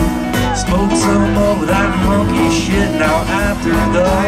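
A rock band playing live on a festival stage: electric guitars, bass, drums and keyboards, loud and continuous.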